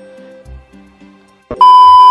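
Soft background music, then about one and a half seconds in a loud, steady, high beep lasting about half a second that cuts off suddenly: the test-tone beep that goes with a TV colour-bars transition effect.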